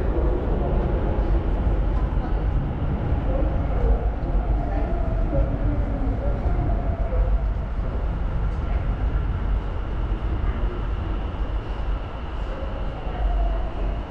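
Subway train running, a steady low rumble.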